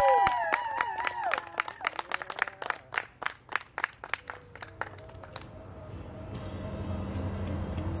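A small group of guests clapping and cheering, with a high whooping cheer at the start; the claps thin out and stop after about five seconds as background music fades in.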